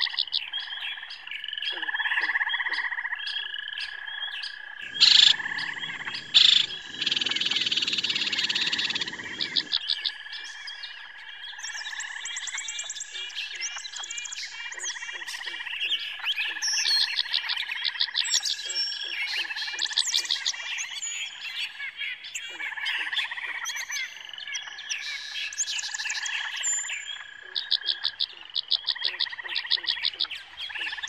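Dense outdoor chorus of calling animals, frog-like and bird-like: a steady high drone under rapid repeated pulsing calls, clicks and short gliding chirps. About five seconds in, a few seconds of loud broad noise with two sharp knocks covers the chorus.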